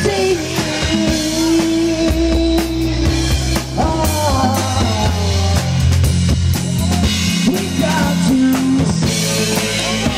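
Live reggae band playing an instrumental passage: an electric guitar plays held, sliding lead notes over bass and a drum kit.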